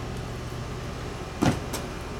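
A steady low background hum, with one sharp knock or slap about one and a half seconds in.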